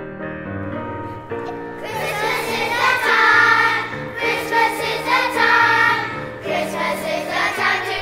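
Piano accompaniment playing, then a children's choir starts singing about two seconds in, with the piano going on under the voices.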